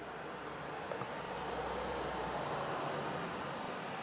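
Steady low background hiss of room noise, with a few faint light ticks around the first second from fine metal tweezers picking lint out of a phone's USB-C charging port.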